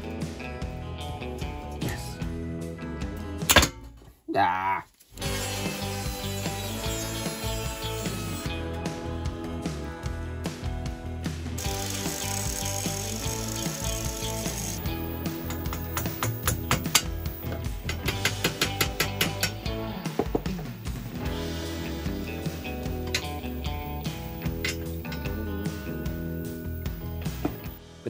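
Background music with workshop tool sounds mixed under it: a spanner clicking on the bolts of a motorcycle exhaust's EXUP valve, and an angle grinder cutting steel exhaust pipe partway through.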